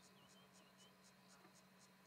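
Near silence, with faint insect chirping: a thin, high pulse repeating about four times a second, plus a few small, softer chirps.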